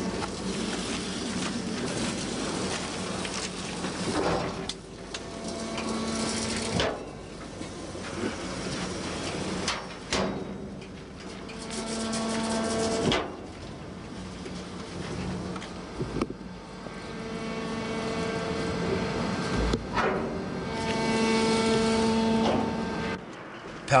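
Railway workshop machinery running: a steady mechanical noise with a hum that comes in three spells, each stopping abruptly, the last near the end.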